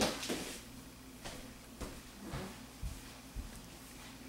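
Faint knocks and handling noises of people moving in a small room: a sharper knock at the start, then scattered light clicks and a few soft low thumps.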